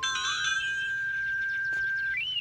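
Electronic music from a story cassette playing through the Mother Goose Storyteller lamp's small speaker: a single high note, stepping up slightly just after the start and then held steady, with a brief chime-like shimmer at the outset.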